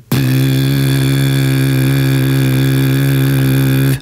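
Beatbox lip oscillation, a clean lip buzz, sung together with a vocal note so the two notes sound as one steady, pitched tone. It is held evenly for about four seconds and cuts off at the end.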